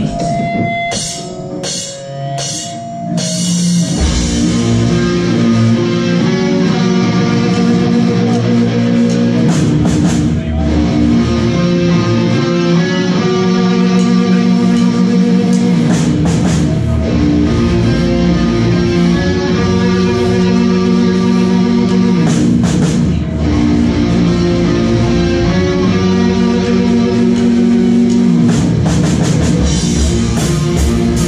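Live metal band playing: electric guitars, bass and drum kit. A sparse opening of scattered hits and held notes gives way to the full band at full volume about four seconds in, with slow, heavy sustained chords.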